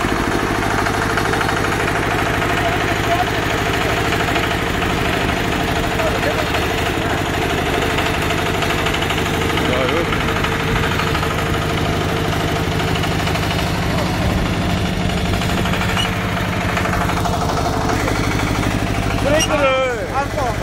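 Single-cylinder diesel engine of a Korean walk-behind power tiller (gyeongungi) running steadily under way, a fast even chugging.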